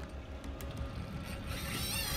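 Faint mechanical clicking and whirring of a heavy spinning reel working against a hooked shark, over a low rumble of wind on the microphone.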